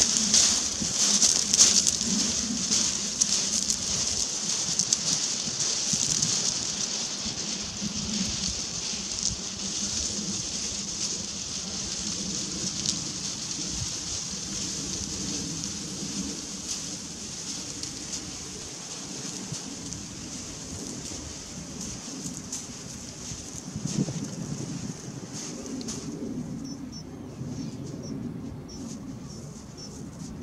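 Loose shingle crunching under footsteps and the wheels of a four-wheeled electric barrow, a dense patter of small clicks that fades steadily as they move away.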